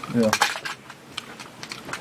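A small plastic candy package being handled and opened, giving a few separate sharp clicks and clinks.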